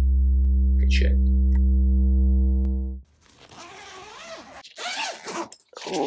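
A sustained sub-bass note from a soft sub sample plays steadily for about three seconds and cuts off abruptly. Then comes rustling of a padded fabric bag being handled and unzipped.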